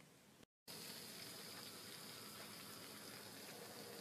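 Faint, steady sizzling of minced meat and mixed vegetables frying in a pan. It starts about half a second in, after a brief moment of dead silence.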